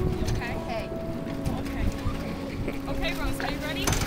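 Wind buffeting the microphone over choppy lake water, with indistinct voices and a sharp knock just before the end.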